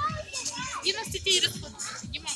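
Children's voices and playful chatter over background music with a steady beat.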